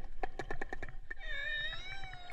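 Killer whales heard underwater: a quick run of echolocation clicks, about ten in the first second, then a wavering, whistle-like call from a little over a second in. The clicks are made while herding a school of fish.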